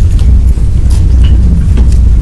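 A steady low rumble fills the room, with a few faint, brief clicks above it.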